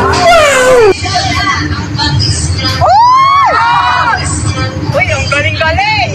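People's voices in drawn-out, wordless exclamations that glide in pitch, over a background babble of a crowd; the sound cuts abruptly about a second in and a long rising-then-falling exclamation comes about three seconds in.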